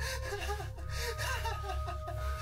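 Breathy gasps and fast, laugh-like voice sounds, repeating several times a second, over a steady low drone and held tones of a horror-film soundtrack.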